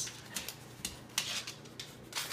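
A cat clawing and biting at packaging, giving short bursts of crinkly rustling and scratching about four times.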